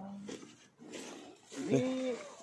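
Men talking, with a short, faint lull of background noise between the words.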